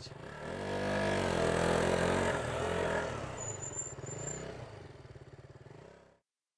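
Small motorcycle pulling away: the engine revs up in pitch in the first second or so, runs on steadily, then fades into the distance over the last few seconds.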